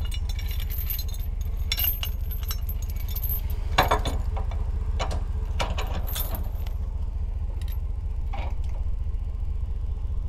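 Steel trailer safety chains and hitch hardware clinking and jangling as they are handled, in several separate bursts, over a steady low hum.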